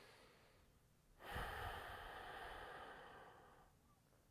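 A person breathing audibly into a close microphone. One long, deep breath starts about a second in with a soft puff of air on the mic, lasts about two and a half seconds and fades away. A fainter breath is heard just before it.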